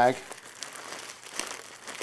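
Soft crinkling of a plastic bag being kneaded by hand, working water into Hydrostone gypsum cement powder inside it to mix it before casting.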